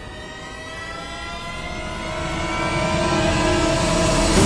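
A rising soundtrack swell: several tones climb slowly in pitch while it grows steadily louder, leading into the music.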